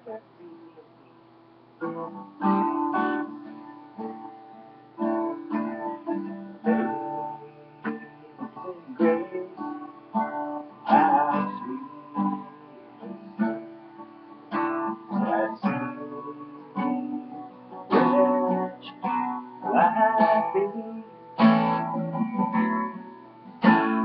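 Acoustic guitar being strummed, chord after chord with short pauses between, starting about two seconds in.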